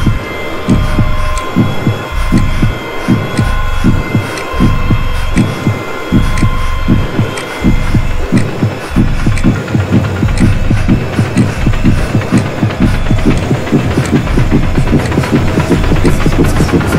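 Film soundtrack: a low throbbing pulse like a heartbeat over a steady high drone. The drone fades about halfway through and the pulses come faster, building tension.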